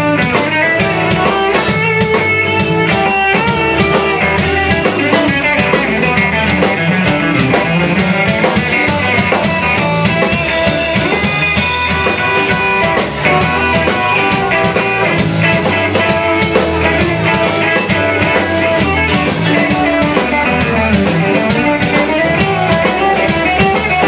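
Live rock band playing an instrumental passage: electric guitar over a drum kit keeping a steady beat, with a wash of cymbals around the middle.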